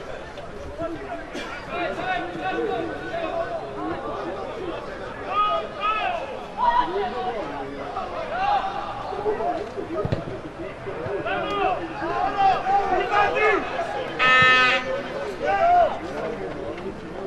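Voices of players and a few spectators calling out across a football pitch, several overlapping shouts at once, with one loud, drawn-out shout about a second before the end.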